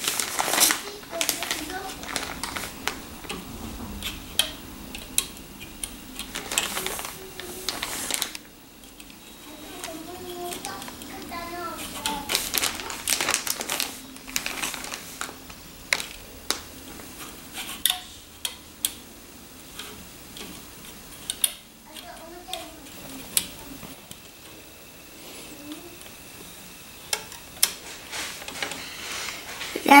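Irregular small clicks and taps of rubber loom bands being stretched and snapped onto the pegs of a plastic bracelet loom, with the plastic loom knocking lightly now and then.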